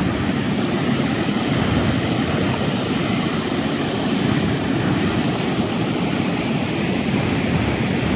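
River water spilling over the crest of an inflated rubber dam and crashing into the pool below: a steady, loud rush of falling water.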